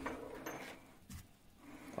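Faint rustling and rubbing of a hand moving over the plastic housing of an iOptron CEM60 telescope mount, mostly in the first second, with a small tap a little past the middle.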